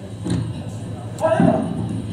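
Indistinct voices from a training-session video played over a loudspeaker in a large hall, louder from a little past halfway.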